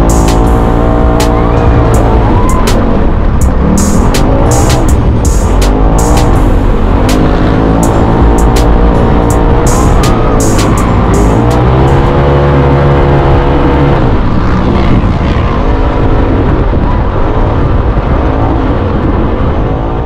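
Side-by-side UTV engine revving up and down again and again as it drives through sand dunes, heard from the cockpit, with music playing over it.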